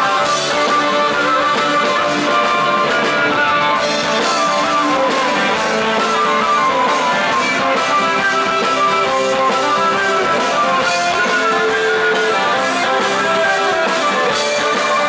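A live folk band playing a tune: violin melody over strummed acoustic guitar, electric bass and drum kit. The cymbal strokes get brighter and steadier from about four seconds in.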